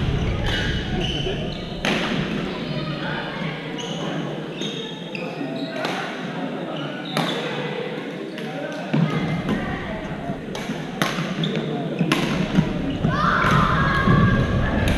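A badminton rally: rackets strike the shuttlecock sharply every second or so, and shoes squeak briefly on the court floor. The strikes ring in a large, echoing sports hall over a bed of voices from the other courts.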